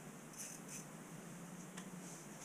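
Quiet room tone inside an ice-fishing shelter: a faint steady hiss with a few small, soft ticks.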